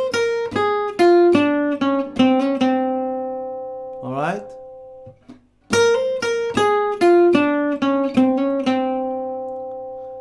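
Archtop jazz guitar picked in a quick single-note blues phrase with a down-stroke, hammer-on, up-stroke trill ornament, ending on a long ringing note. The phrase is played twice, the second time starting about six seconds in.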